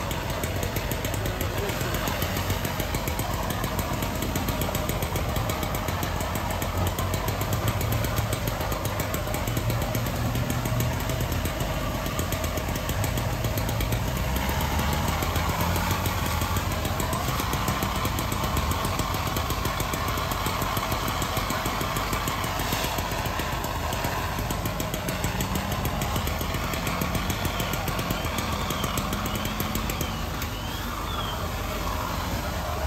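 Steady engine drone of fire apparatus running to pump water, under the continuous hiss of hose streams and steam on the burning truck.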